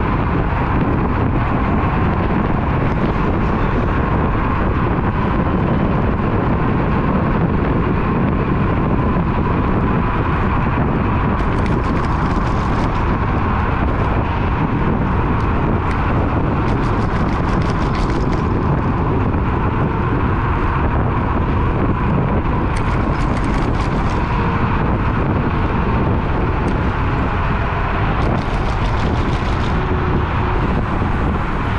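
Steady rush of wind and road noise from riding a Nanrobot D6+ electric scooter at speed, heavy on the low end, with a faint steady whine underneath and a few brief hissy flurries.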